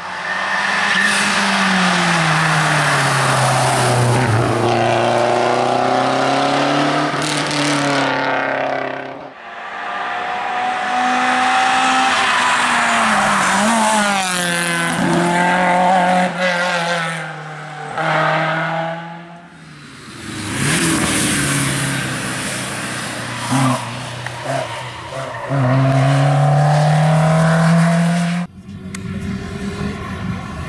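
Historic rally cars at speed on a tarmac special stage, one after another: each engine revs hard, then falls away as the car shifts gear and brakes for the bends. The first is a Lancia Delta.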